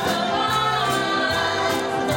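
Gospel song sung by a woman's lead voice with a group of backing singers, over band accompaniment with sustained bass notes and a regular percussion beat.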